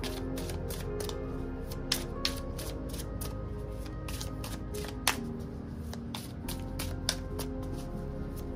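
Tarot deck being shuffled by hand: a run of quick, light card flicks and slaps, with a few sharper snaps, over background music.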